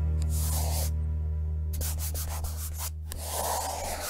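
Logo sting sound design: a steady deep bass drone with two brushy swishes of paint-stroke noise, one about half a second in and a longer one near the end, and small clicks between. The drone cuts off right at the end.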